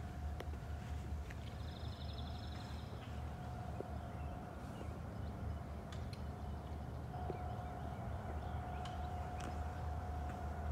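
Quiet outdoor background: a steady low rumble with a faint steady hum, a brief high trill about two seconds in, and a few faint ticks.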